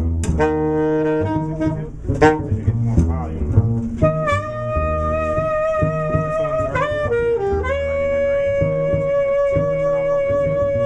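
Acoustic double bass plucking a jazz line on its own. About four seconds in, an alto saxophone comes in over it with long held notes, stepping down to a lower held note near the end.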